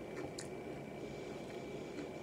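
Close-miked chewing of loaded nacho tortilla chips, with a couple of small crisp crunches about half a second in.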